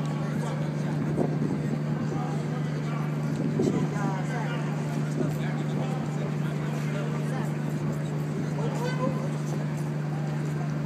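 Outdoor urban ambience: scattered voices of people talking in the background over a constant low machine hum.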